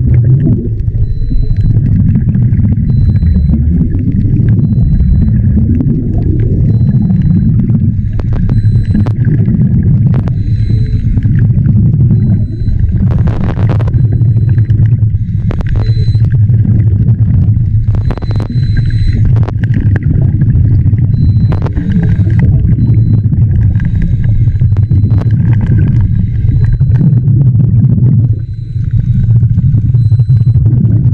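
Underwater sound picked up by a camera in a waterproof housing: a steady, loud low rumble of water, with a faint high tick repeating about once a second. Near the middle come a few louder rushes, the bubbles of a scuba diver breathing out.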